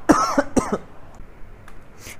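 A man coughs twice in quick succession in the first second, then only quiet room tone.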